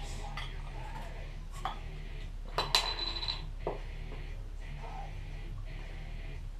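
A few clicks and clinks of glass and metal as a beer bottle is opened and handled. The loudest comes about two and a half seconds in: a sharp metallic clink that rings briefly, like a bottle cap coming off. A low steady hum runs underneath.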